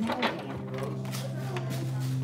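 A steady low hum, made of a few held tones, sets in shortly after the start, under faint background voices.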